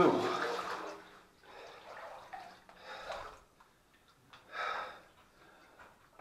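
Feet wading through water in a flooded mine tunnel: sloshing and splashing in several separate surges with quiet gaps, the loudest about four and a half seconds in.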